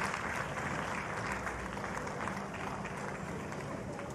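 Spectators applauding at the end of a tennis match: steady clapping that slowly fades.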